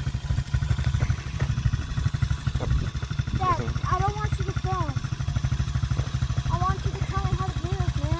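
Small single-cylinder pit-style dirt bike engine idling steadily with a rapid, even low pulse.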